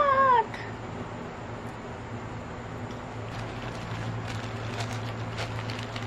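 A young girl's high vocal sound falling in pitch, cut off about half a second in. Then a low steady hum with faint crinkling of a paper burger wrapper near the end.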